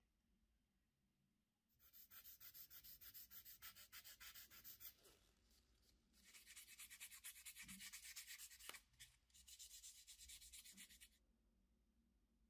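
Fine-grit sanding pad rubbing a small plastic model-kit part in quick, short back-and-forth strokes, smoothing it before priming. Quiet, in two spells: about three seconds of sanding starting two seconds in, a short pause, then about five seconds more.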